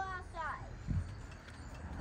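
A young child's brief wordless vocal sound, then about a second in a single dull thump from the trampoline, with a low rumble of wind on the microphone underneath.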